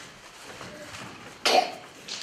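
A single short, sharp cough about one and a half seconds in, over quiet hall room tone.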